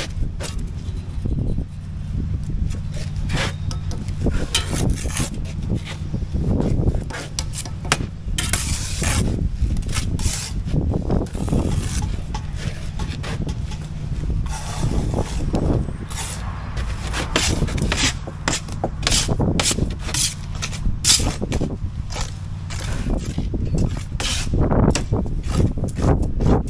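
Steel trowels scraping mortar and tapping concrete blocks as blocks are buttered and laid. Many short, irregular scrapes and knocks over a steady low hum.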